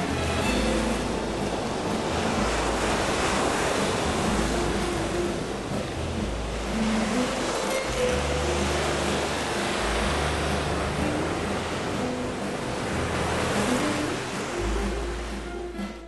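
Sea surf washing over rocks, a steady rush that surges louder a few seconds in and again near the end. Background music plays underneath.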